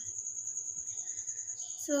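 A chirping insect giving a steady, high-pitched trill of rapid, even pulses.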